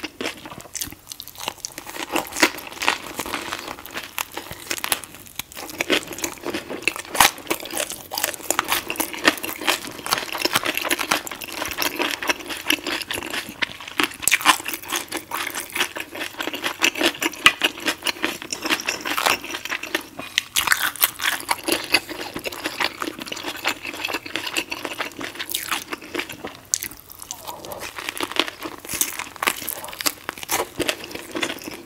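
Close-miked chewing and crunching of a lobster-claw spring roll with lettuce and herbs in rice paper: a dense, continuous run of crisp, wet clicks and crackles.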